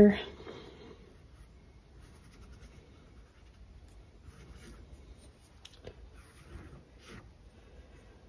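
Paintbrush bristles stroking acrylic paint across a canvas: faint, scratchy brushing, with a few strokes in the second half.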